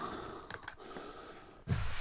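Quiet handling noise of fingers rubbing and picking at the sandpaper disc on a random orbit sander's pad, with a few faint ticks, then a breath near the end.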